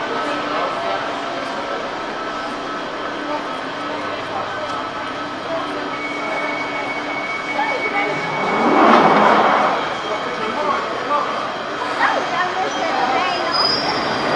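London Underground tube train standing at the platform while its doors close, against the steady din of the station. A surge of noise swells and fades about nine seconds in.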